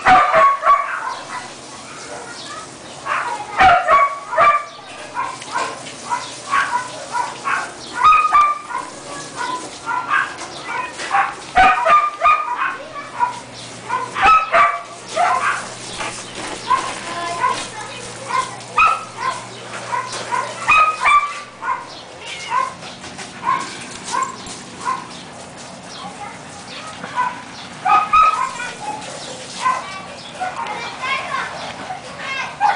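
Siberian husky puppies, about five weeks old, yipping and whimpering in many short, high squeaks throughout, with occasional knocks.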